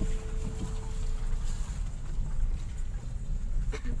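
Low, steady rumble of a car moving slowly over a rough, unpaved road, heard from inside the cabin. A tail of background music fades out about a second in, and a few short knocks come near the end.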